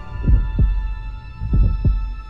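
Heartbeat sound effect: two double thumps, each a lub-dub, about a second and a quarter apart, over a steady droning hum.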